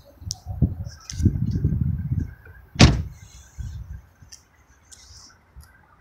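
The driver's door of a 2011 Volkswagen Tiguan shut with one sharp, loud thump nearly three seconds in, after a couple of seconds of shuffling and rustling, with a few light clicks after it.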